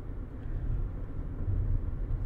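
Steady low rumble of a car heard from inside the cabin: engine and road noise.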